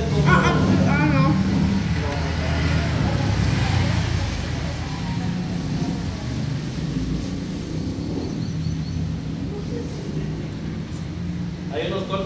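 A steady low mechanical hum, with soft voices over it in the first second or two.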